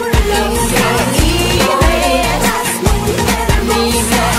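Upbeat Spanish-language pop song: female voices singing over a steady drum beat and backing track.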